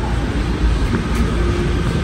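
City street noise: a steady low rumble of road traffic.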